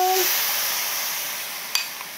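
Dark seasoning sauce poured into a hot stainless-steel wok of stir-fried garlic, onion and chillies, hitting the pan with a loud sizzle that fades steadily. A light tap near the end.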